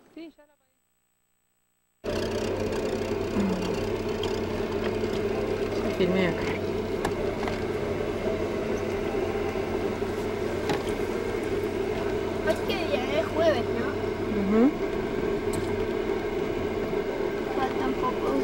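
A steady mechanical drone, like a running engine, starts suddenly about two seconds in after a short silence. A few brief voice sounds rise over it.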